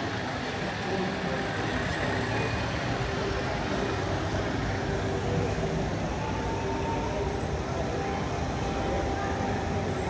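Traffic on a rain-wet city street: vehicles driving past with tyres hissing on the wet road and a steady engine hum underneath, with voices in the background.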